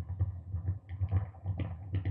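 Self-generating noise music from a chain of effects pedals: irregular, uneven clicking and tapping over a low hum that pulses a few times a second, repeating without exactly repeating.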